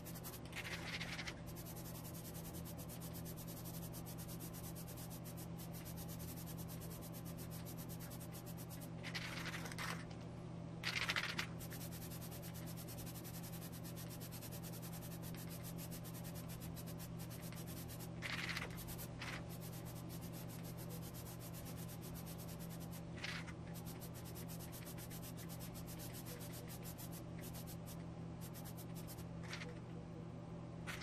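Aerosol can of Plasti Dip rubber coating spraying a light tack coat in short hissing bursts, about seven spread across the span, the loudest about eleven seconds in. A steady low hum runs underneath.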